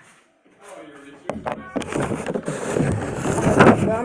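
Handling noise on a phone's microphone as the phone is picked up and moved close to the body: a couple of knocks about a second in, then loud rubbing and rustling that builds toward the end.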